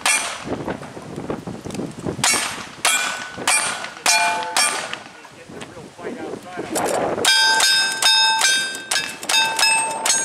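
Single-action revolver shots, about five in a row a little over half a second apart, each followed by the ring of a struck steel target. After a pause of about two seconds, a faster string of lever-action rifle shots begins, with steel targets ringing after the hits.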